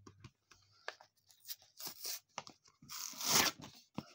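Action figure packaging being opened by hand: short crinkles and clicks of the plastic blister and card, then a longer, louder tearing sound about three seconds in.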